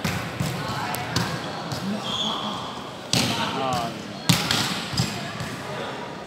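Volleyball being struck during a rally: a few sharp hits, the loudest about four seconds in, echoing in a large indoor hall over the voices of players and spectators.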